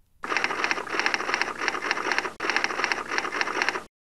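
Dense, rapid clattering noise on the game footage's soundtrack, with a brief break a little over halfway through, cut off abruptly just before the end.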